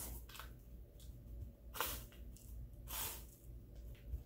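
Faint crunching and scratching of crushed Hot Cheetos crumbs as a pickle is pressed into the coating by hand, a few short crunches.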